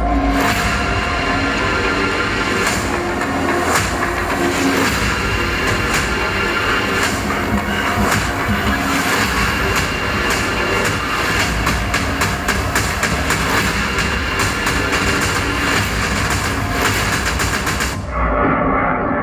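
Loud soundtrack of a Halloween haunt promo reel played over a hall's PA: dense music and sound effects packed with quick percussive hits, with no talking.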